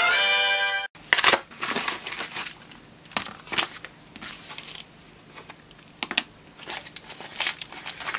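A short musical jingle that cuts off sharply about a second in, followed by intermittent crinkling and rustling of a plastic packet being handled and opened.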